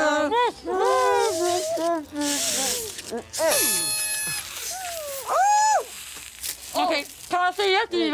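Muffled singing through mouths stuffed with marshmallows, then a party horn blown in one steady tone for about a second, a few seconds in. Short voice sounds and a rising squawk follow.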